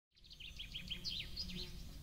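Faint bird chirping: a quick run of about ten short, falling chirps lasting about a second, over a low background rumble.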